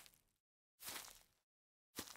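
Near silence, broken by two faint, brief noises: one at the start and one about a second in.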